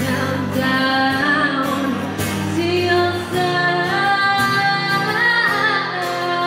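A woman singing live, accompanying herself on acoustic guitar, with long held notes.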